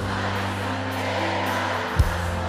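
Rock band music: a held chord over a steady bass note, with a single drum hit at the very end.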